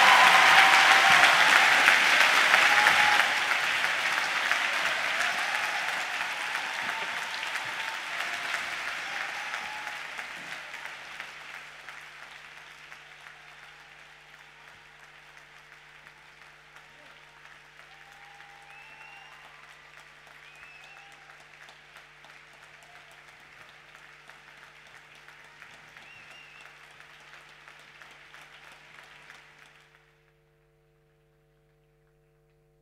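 Theatre audience applauding at the end of a ballet pas de deux, loud at first and dying away over about the first dozen seconds. A faint steady hum remains under the last of the clapping.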